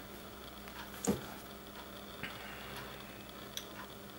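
Low steady hum with a few faint clicks, the loudest about a second in: fingers tapping and handling a smartphone.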